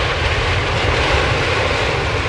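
Airplane engine sound effect: a loud, steady drone of noise over a deep rumble, as of a plane flying past.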